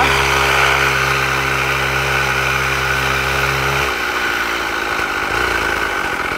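Small mini-bike (pocket bike) engine running at a steady, even speed while ridden. About four seconds in the steady tone stops, giving way to a fainter, rougher engine sound.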